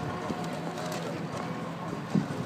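Outdoor city-square ambience: a steady murmur with faint distant voices from an onlooking crowd.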